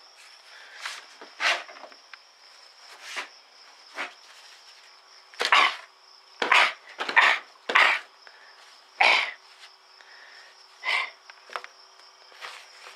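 Tissue paper crumpling and rustling in a hand in about ten short crackly bursts as a spider is squashed inside it. A faint steady high tone runs underneath.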